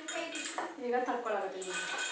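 Metal spatula scraping and clinking against a kadai as fried food is tipped out of it onto a plate, with a voice talking over it.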